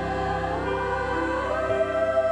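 Mixed-voice high school choir singing in harmony, holding sustained notes that move upward together.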